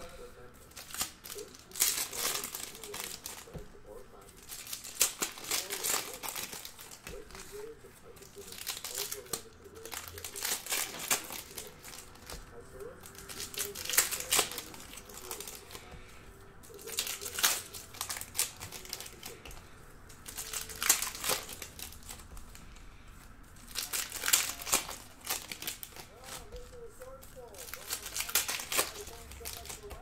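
2019-20 Panini Donruss Optic basketball cards being slid off a stack one at a time, a short swish every second or two, with foil pack wrappers crinkling.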